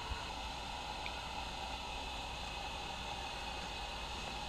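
Portable propane heater burning with a steady hiss, under a faint low hum.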